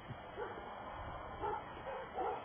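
Short animal calls repeated about twice a second over steady outdoor background noise.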